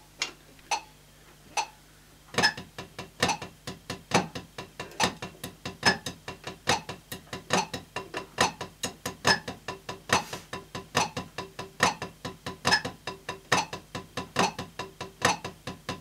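A metronome clicking at about 70 BPM, then, a little over two seconds in, wooden drumsticks playing flam paradiddles on a drum practice pad in time with it: a steady run of strikes with a flam and accent on the first note of each right-left-right-right, left-right-left-left group.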